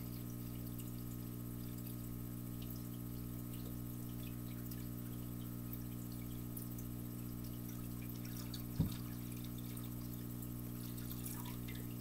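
Water poured in a steady stream from a pitcher into a filled aquarium, over a steady low electrical hum. A single short knock about nine seconds in.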